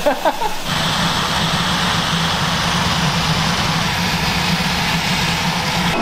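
Vacuum loader drawing green coffee beans up a hose into a coffee roaster: a steady low hum under a rushing hiss. It starts suddenly about a second in, after a burst of laughter.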